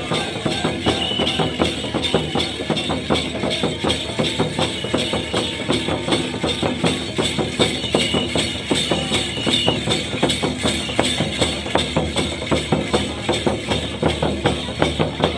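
Live Santhal dance music: a drum beaten in a steady, even rhythm with bells jingling along with it. Two short high notes sound, about a second in and again about eight seconds in.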